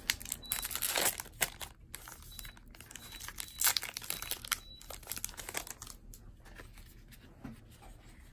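A pack of Allen & Ginter baseball cards being torn open by hand, its wrapper crinkling and crackling in quick, irregular rustles that die down over the last few seconds.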